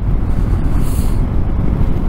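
BMW R 1250 GS boxer-twin engine and rushing wind, heard from the rider's seat while cruising steadily at about 65–70 km/h, with a brief hiss about halfway.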